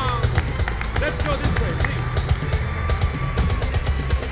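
Loud pop-style music starting up, with a steady deep bass and many sharp percussive hits: the intro of the song that the singer then takes up.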